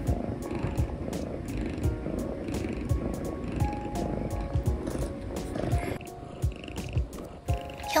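Domestic cat purring strongly with its face in an AeroKat inhaler spacer mask during asthma treatment: a rough, pulsing low rumble. The purring shows the cat is relaxed and used to the inhaler. Soft background music plays along.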